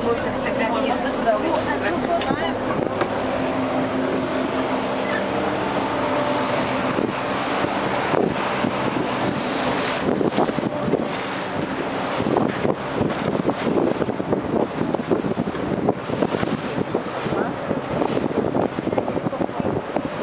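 Motorboat engine running steadily under way, with water rushing past the hull and wind buffeting the microphone; about halfway through, the engine hum is masked by gusty wind noise.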